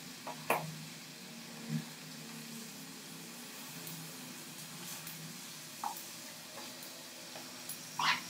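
Squid and vegetables sizzling faintly on a hot plate, with a few sharp clicks, the loudest about half a second in, as kitchen scissors cut through the squid.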